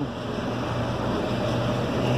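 Steady outdoor background noise: a low rumble and hiss with a faint steady hum underneath.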